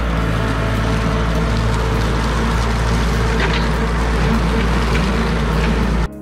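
Compact tractor engine running steadily as it drives a rear-mounted finishing mower across grass, a constant low hum.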